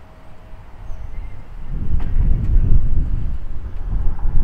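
Wind buffeting the microphone: a rough, gusty low rumble that builds up about halfway through and stays loud.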